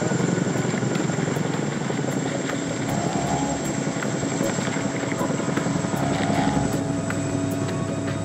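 Tandem-rotor Chinook helicopter hovering close overhead, its rotors beating in a fast, steady chop. Music with held tones comes in about three seconds in.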